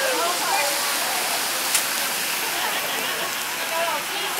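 Steady hiss of rain and wet-street noise, with faint voices under it and a single sharp click a little under two seconds in.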